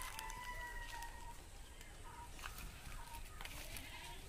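A rooster crowing, the long held end of the crow stopping a little over a second in, followed by two short calls. A few sharp crackles, like dry leaves or twigs being stepped on, come in between.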